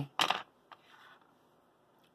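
A brief, sharp metallic clink of small parts handled with tweezers, then a single faint tick shortly after.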